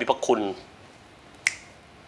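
A man's voice for a moment, then a single sharp click about a second and a half in.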